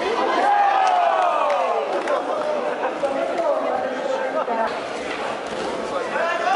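A crowd of spectators in a large hall: overlapping voices and calls, with one loud, drawn-out shout in the first two seconds as a player is thrown.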